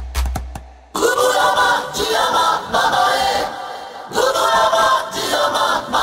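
Chanted choral vocals in a hardstyle track, sung unaccompanied in short repeated phrases. They come in suddenly about a second in, just as the bass and kick fade out.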